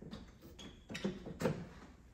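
Porsche Cayman 987 front radiator being slid back into its mounting clip: a few light knocks and clicks, the loudest about a second and a half in.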